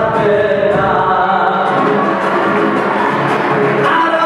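Live band music: several voices singing together over strummed guitars and a large drum keeping the beat.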